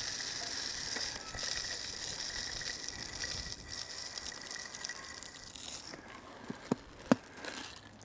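Mixed bird seed pouring from a plastic filler into a tube bird feeder, a steady hiss of seed running down the tube that thins out and stops about six seconds in. Two light knocks follow near the end.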